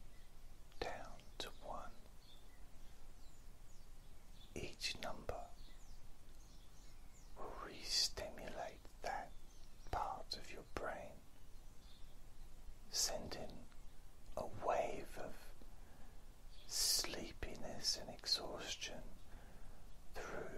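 A man whispering close to the microphone in short, slow phrases with pauses between them, the s-sounds sharp and hissy.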